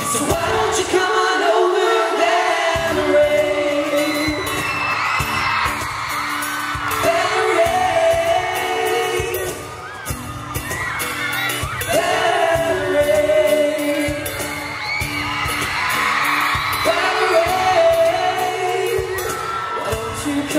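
Live pop singing over acoustic guitar accompaniment, with a crowd cheering and screaming over the music.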